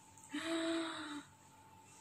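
A woman's breathy gasp, held on one pitch for just under a second.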